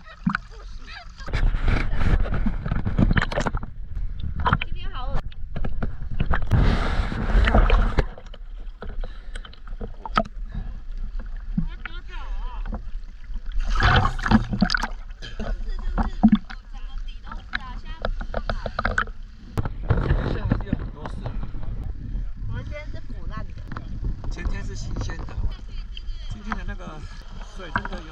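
Sea water sloshing and splashing around a camera held at the surface, with two louder stretches of splashing about one to three and six to eight seconds in.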